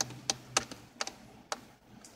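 A string of short sharp ticks inside a car, about two a second and slightly uneven, over a faint low hum.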